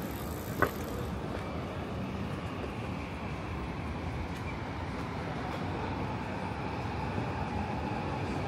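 Steady city street traffic noise, with a faint engine or motor whine that grows and rises slightly in the second half as a vehicle passes. A single sharp click about half a second in.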